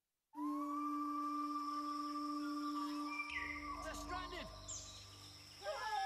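Advertisement soundtrack music: after a brief silence at the start, held notes ring steadily, with a few falling sweeps about three to four seconds in and a new chord near the end.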